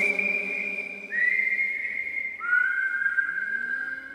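Whistled melody: three long notes, each a step lower than the one before and each sliding up slightly into its pitch.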